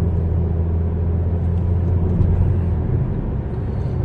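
Car cabin noise: a steady low engine and road drone heard from inside the car, its deepest hum easing off a little after two seconds in.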